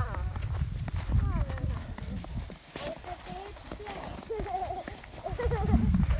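Footsteps crunching in deep snow as a child pulls a wooden sled along by its rope, with the sled's runners sliding over the snow. Young children's voices, without clear words, are heard over the steps.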